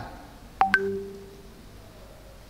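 A short electronic notification chime: two quick high blips, then a lower tone held for about a second.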